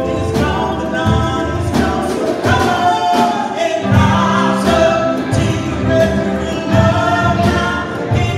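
A live worship band playing a song: several voices singing together over acoustic guitar, electric bass and a drum kit, with a steady beat.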